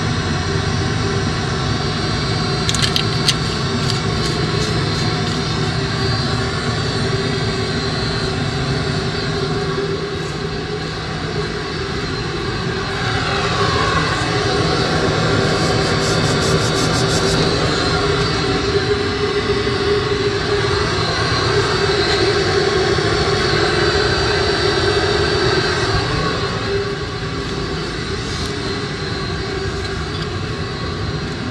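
Steady, loud mechanical drone like an engine running, with a tone that dips and rises again about halfway through and a few brief light rattles.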